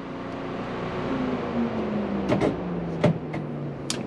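A race car just after its engine has been switched off: a faint whir winding slowly down in pitch over a steady hiss, as something in the car spins down, with several sharp clicks in the second half.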